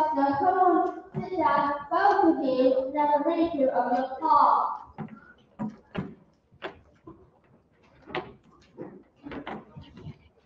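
Children singing a short phrase of held notes for about five seconds, then a scatter of sharp knocks and clicks.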